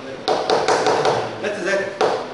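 A handful of sharp taps spread over two seconds, with voices talking underneath.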